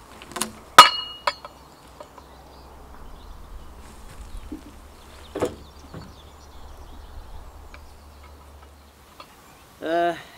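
A log being levered and rolled with a hooked lever bar: sharp metallic clinks and knocks in the first second or so, the loudest with a brief ring, then a dull knock about five and a half seconds in as the log rolls over.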